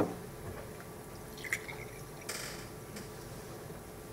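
Water poured from a bottle into a drinking glass, faint: a knock at the start, a light clink of glass about a second and a half in, and a short splash of liquid soon after.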